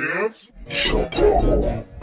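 Slowed-down, effects-processed remix audio of voice-like sounds and music. It opens with a sound gliding steeply down in pitch, then gives way to a dense, warbling voice-like mix.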